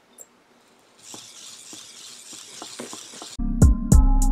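Small geared servo motors of an EMO desktop robot whirring with light scattered clicks as it walks in answer to a voice command. About three-quarters of the way in, intro music with a steady beat starts loudly.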